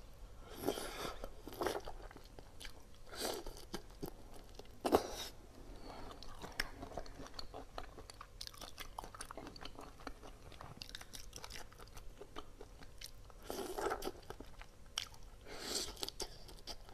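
Close-miked eating of whole shell-on shrimp in chili sauce: bites and chewing with crunching shell and small wet mouth clicks. A sharp loud crack comes about five seconds in, and a cluster of bites comes near the end.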